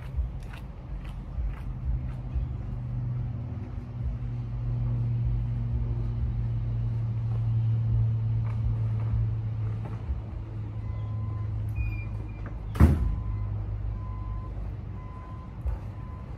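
A motor vehicle's engine running with a steady low hum that swells through the middle and eases off again. A single sharp bang comes about three-quarters of the way in, and faint repeated beeps sound near the end.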